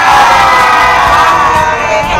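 A loud, drawn-out vocal sound held for almost two seconds over background music, fading near the end.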